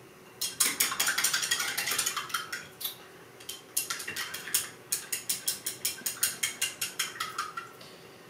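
Paintbrush being rinsed in a glass jar, clinking quickly and rhythmically against the glass in two runs with a short pause about three seconds in.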